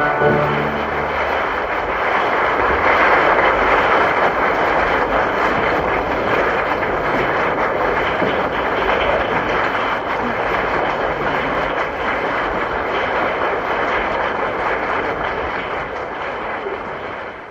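A live opera audience applauding steadily, after the orchestra's held final chord dies away in the first second or so.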